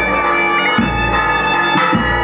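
Galician gaitas (bagpipes) playing a tune over their steady drone, with a small snare drum (tamboril) beating along underneath.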